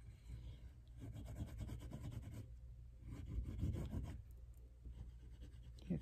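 Oil pastel scratching across construction paper as leaves are coloured in, in several spells of quick back-and-forth strokes with short pauses between.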